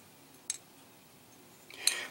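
A single light metallic click about half a second in, from the aluminium cylinder head and valve rocker arms of a Predator 212cc Hemi engine being handled, followed by quiet room tone.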